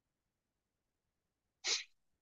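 A man's single short, stifled sneeze near the end, after near silence.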